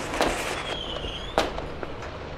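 Two sharp firecracker bangs about a second apart, the second the louder.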